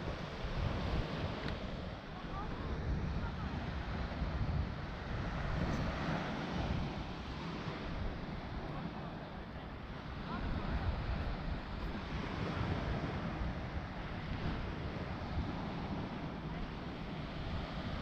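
Waves breaking on a sandy beach with wind buffeting the microphone: a steady rush of surf and wind noise.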